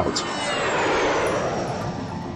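Twin-engine jet airliner flying overhead: a steady jet roar with a high whine that falls in pitch as it passes.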